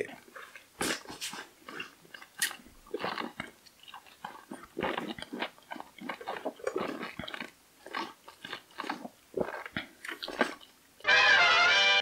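Sipping and swallowing as soda is sucked up through thin aquarium tubing from cans held on a drinks helmet: a run of short, irregular, quiet mouth sounds. About a second before the end a louder, steady musical sound cuts in.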